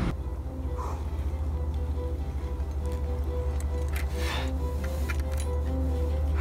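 Background music: a steady deep bass with held tones above it and an even, pulsing rhythm.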